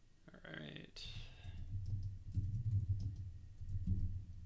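Typing on a computer keyboard, a run of keystrokes with low thuds entering a terminal command, in the second half. In the first second, a short wordless voice sound.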